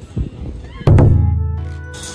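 Background music, then just under a second in a loud, deep thud that rings on and fades away over about a second.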